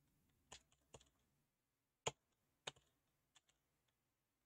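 Faint computer keyboard keystrokes: about five separate, unhurried key presses spread over a few seconds, with near silence between them.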